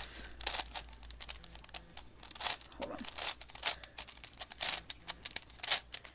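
Plastic layers of a V-Cube 7x7x7 puzzle cube being turned by hand, giving irregular clicks and clacks with rustling of fingers on the cube between turns.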